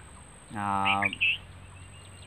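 A man's voice holding one steady, unbroken sound for about half a second, a hum or drawn-out vowel, near the middle. A few short, high bird chirps come at its end.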